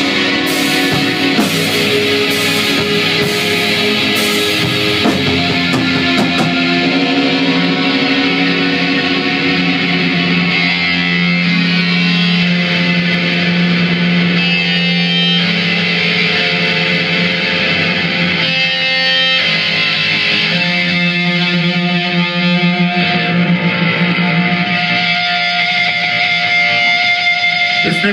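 Doom metal band playing live, instrumental with no singing: heavy distorted electric guitars and bass over drums. Hard drum and cymbal hits in the first few seconds, then long, slow held chords.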